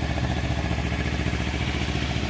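Kawasaki Ninja 250 FI ABS SE's parallel-twin engine idling steadily and smoothly.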